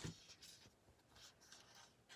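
Faint paper-handling sounds at a planner: a soft tap, then a few short, quiet scratches and rustles of paper.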